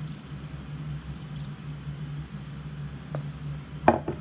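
A steady low hum, then a sharp knock near the end as a glass Pyrex measuring cup is set down on the counter after pouring.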